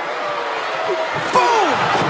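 Wrestling arena crowd noise with scattered shouting voices, and a single thud about a second and a half in, after which the crowd grows louder.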